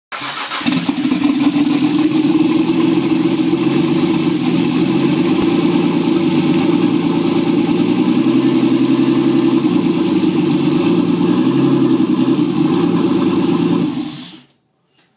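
Nissan RB25DET Series 2 turbocharged 2.5-litre straight-six on its stock turbo, started for the first time after the swap: it catches about half a second in and then idles steadily. It runs loud and raw through an open turbo elbow with no exhaust fitted, with a steady high whine over it.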